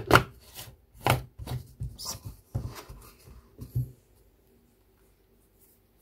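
Hard plastic clicks and knocks from a personal blender's cup as its blade base is screwed on and the cup is handled, about seven irregular knocks in the first four seconds.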